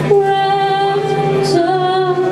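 A woman singing lead vocal in a live band, holding one long note that steps down in pitch near the end, over sustained band accompaniment.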